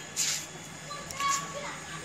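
A pause between spoken phrases: a short breath just after the start, then faint street background with distant voices, like children at play.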